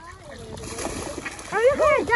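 Waterfowl calling: loud honking calls that rise and fall in pitch, starting about one and a half seconds in.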